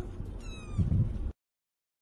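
Kitten mewing: one short, high, falling squeak about half a second in, then a brief low muffled sound, before the audio cuts off suddenly.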